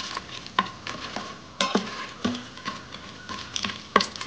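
Cashews and whole spices sizzling in hot ghee in an Instant Pot's stainless steel inner pot on sauté mode. A spatula stirs them, with irregular clicks and scrapes against the pot over a faint steady hiss.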